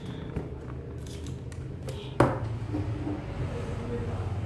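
Paper gift bag and cardboard watch box being handled on a wooden desk: light rustles and small taps, with one sharp knock about two seconds in, over a steady low hum.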